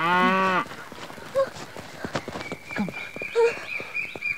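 A cow lowing once, briefly, right at the start, followed by quieter rural background with a thin steady high-pitched tone from about halfway through.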